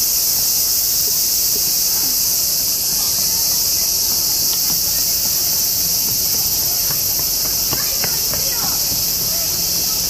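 A dense chorus of cicadas calling very loudly, a steady high-pitched drone that never lets up.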